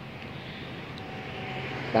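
A distant engine: a steady hum that grows slowly louder.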